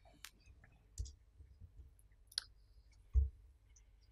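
Four quiet clicks and knocks of handling at a lectern, about a second apart, with the loudest, a low knock, about three seconds in.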